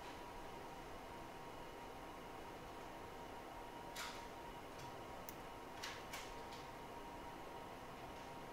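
Hot air rework station blowing over a circuit board: a faint, steady hiss with a thin, steady hum. A few light ticks, about four seconds in and twice around six seconds, from metal tweezers touching the board.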